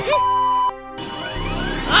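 Cartoon machine sound effects over background music: a steady electronic beep for under a second, then a whirring machine noise that rises in pitch as the contraption starts up after a button is pressed.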